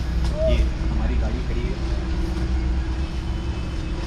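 Steady low rumble of a vehicle engine running, with a faint steady hum over it.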